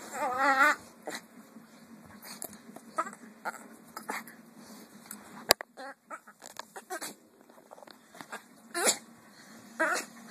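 Dogs vocalizing as they play-fight: a wavering, high whine about half a second in, then scattered short yips and grunts, with two louder calls near the end. A single sharp click comes about five and a half seconds in.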